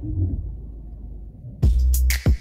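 Background music: a low, steady bass layer, then a loud electronic beat with heavy bass-drum hits kicks in about a second and a half in.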